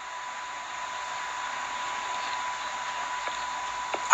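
Steady background hiss with a faint, constant high-pitched whine held on one note throughout; no speech.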